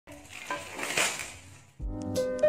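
Clear plastic packaging around a handbag crinkling as it is handled, swelling about a second in and then fading. Keyboard music starts just before the end.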